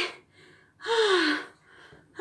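A woman's single drawn-out exclamation, an 'ohh' falling in pitch, about a second in.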